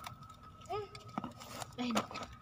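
Cardboard carton being cut open with a box cutter: a sharp click a little over a second in, then a short scratchy rip of tape and cardboard.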